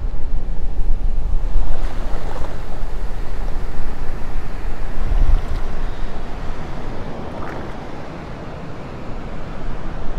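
Wind buffeting the microphone over the wash of beach surf: a steady rushing noise with a deep rumble, easing briefly about eight seconds in.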